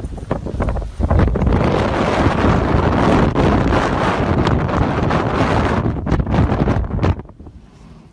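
Strong blizzard wind buffeting the microphone: gusty at first, then a loud, steady rush from about a second in that drops away abruptly near the end.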